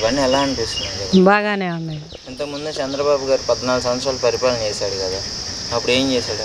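A steady, high-pitched chirring of insects, pausing briefly about a second in, behind a woman talking.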